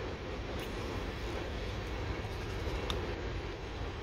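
Freight train's covered hopper cars rolling across a steel railway trestle overhead: a steady, even rolling noise with no distinct wheel clicks.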